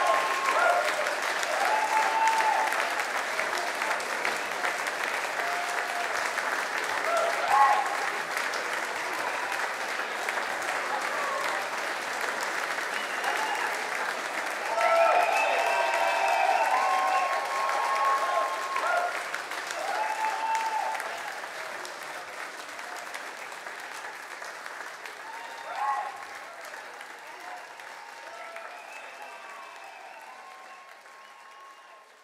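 Live audience applauding, with voices calling out over the clapping. The applause fades out gradually over the last several seconds.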